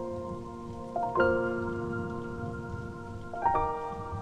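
Solo piano playing a slow, gentle waltz, with chords struck about a second in and again shortly before the end and left to ring, over a steady layer of falling rain.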